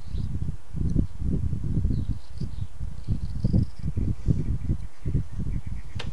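Carving knife shaving small chips off a hand-held wooden figure: a quick, irregular run of short, dull strokes.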